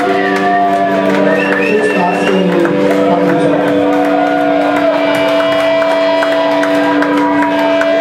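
A band playing live in a small club, with long held notes sounding throughout over plucked and struck playing.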